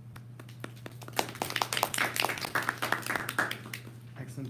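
A small audience clapping in a short burst of applause that starts about a second in and dies away just before the end.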